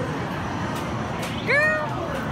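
A young girl's short, high-pitched cry, rising then falling in pitch, about one and a half seconds in, over the steady background noise of an arcade.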